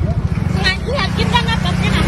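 A motor scooter's small single-cylinder engine idling with a steady low putter, under a woman's voice.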